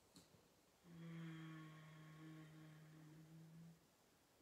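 A woman softly humming one steady, held note for about three seconds, after a faint click.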